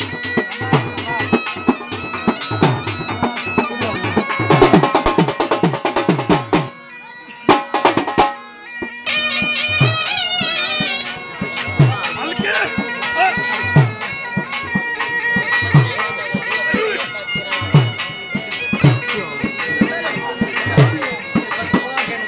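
Live folk dance music: a loud reed pipe plays a held, ornamented melody over a steady drone, driven by regular drum beats. The music breaks off for about two seconds around seven seconds in, then comes back in.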